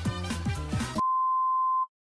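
Pop music with a deep bass beat cuts off about a second in and gives way to a single steady, high-pitched electronic beep lasting just under a second.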